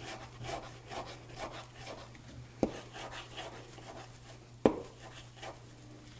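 Oil pigment stick rubbed over wet paint on a rigid Encausticbord panel in short, repeated scraping strokes, about two a second. Two sharp knocks come through, a little before the middle and again near the end, the second the louder.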